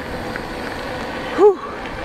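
Steady rush of wind and tyre noise from an e-bike rolling along a rough paved road. About one and a half seconds in, the rider lets out a breathless 'whew', winded from hard pedalling.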